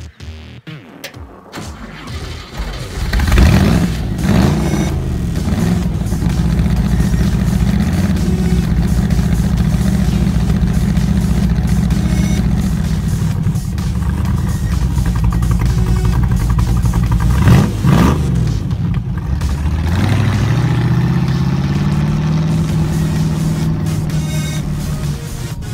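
A stock car's 3.5-litre V8 engine starts about three seconds in and idles loudly, with a quick blip of the throttle past halfway; near the end its revs rise as the car pulls away.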